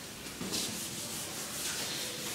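A whiteboard eraser rubbed across a whiteboard in several back-and-forth strokes.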